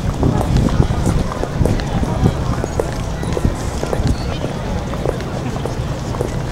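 Footsteps of someone walking on pavement, a run of short light clicks, over a steady low rumble, with people's voices in the background.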